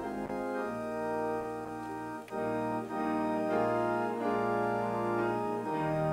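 Organ playing a hymn tune in held chords that change every half second to a second.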